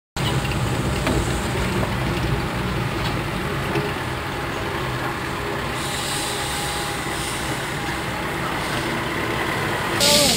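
Steady low engine rumble of yard vehicles, with a hiss that grows louder after about six seconds.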